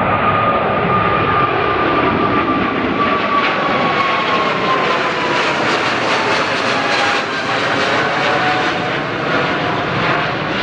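Boeing 777 twin-jet airliner's engines at takeoff thrust as it climbs out overhead: a loud, steady roar with a high whine that slowly falls in pitch as the plane passes over, turning to a crackling rumble in the second half.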